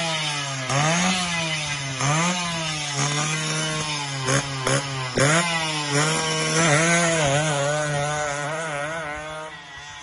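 Suzuki AX100 single-cylinder two-stroke engine on a homemade motorized drag bicycle, revved in short blips about once a second, then held at a wavering rev. It fades away near the end as the bike pulls off.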